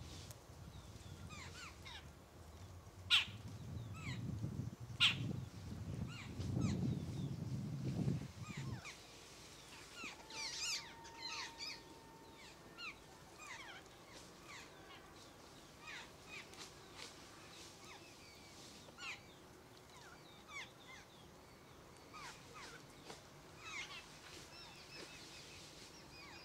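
Many birds chirping and calling, short sharp notes throughout. Two sharp clicks come about three and five seconds in, and a low rumble sits under the first eight seconds.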